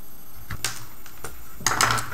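Light, irregular clicks and ticks of hands handling and twisting thin servo wire leads and their small plastic connectors, with a brighter cluster of clicks near the end.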